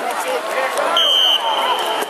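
Referee's whistle blown once about a second in: a short high-pitched blast whose tone then hangs on faintly for most of a second, over the chatter of spectators. It signals the end of the play.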